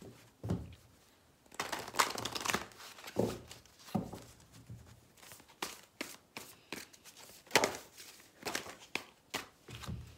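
A deck of tarot cards being shuffled by hand: irregular soft flicks and taps of the cards. Near the end the cards are laid out on a cloth-covered table.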